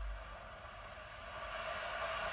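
Faint steady rushing noise of ocean surf from the trailer's soundtrack, heard through speakers in the room.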